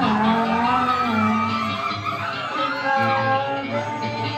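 Live rock band playing: electric guitar, bass guitar and drums, loud and steady throughout.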